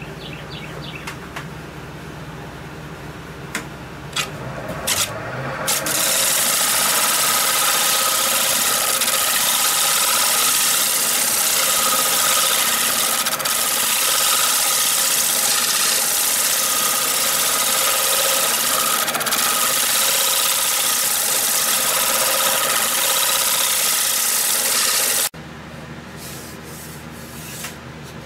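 A wood lathe spins up about five seconds in. A turning tool then shear-scrapes the spinning cherry platter blank with a loud, steady rasping, which cuts off abruptly near the end.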